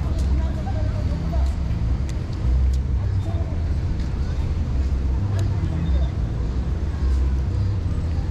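Busy city-plaza ambience: passers-by talking in the crowd over a steady, uneven low rumble.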